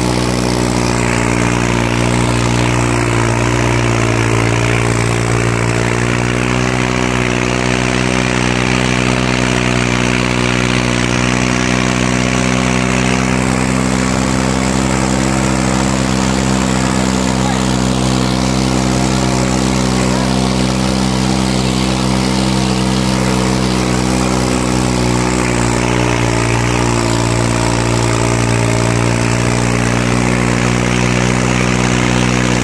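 New Holland 3630 tractor's three-cylinder diesel engine running hard and steady under heavy load as it drags a disc harrow through soil, its pitch holding almost constant with only slight wavers.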